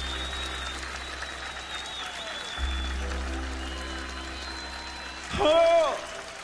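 Live band holding long bass notes and chords over crowd applause. Near the end a singer gives a short, loud call over the microphone.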